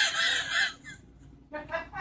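A high-pitched, breathy laugh that fades out less than a second in, followed by a few short laughing breaths near the end.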